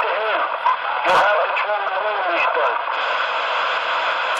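CB radio receiving a transmission: a voice comes through the radio's speaker, thin and tinny, over steady static hiss, with no words that can be made out.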